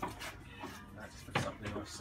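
Stainless steel slide-out camp kitchen being handled on the trailer, with one sharp knock about a second and a half in.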